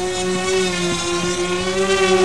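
Electric motors and propellers of a radio-controlled F-35 STOVL model hovering low on vectored thrust: a steady high whine with several overtones, rising slightly in pitch near the end.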